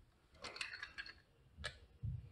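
Small plastic camera housing and its screw-on antenna being handled: light clicks and taps, a few together about half a second in and a single sharper click near the end.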